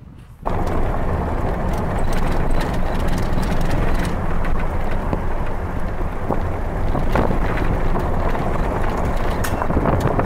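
Steady rumble of road and wind noise inside a moving car, cutting in suddenly about half a second in, with scattered small knocks.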